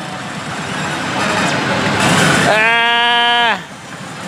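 Loud pachislot-hall noise and slot machine sounds, then about two and a half seconds in a man's drawn-out groan, "uuuun…", held for about a second and sagging at the end, as the machine's AT bonus run ends at a total of 124 medals.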